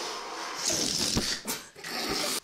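Air rushing out of a rubber balloon with a hiss and a wavering, whining squeal. A sharp snap comes a little after a second in, and a second burst of rushing air comes at the end.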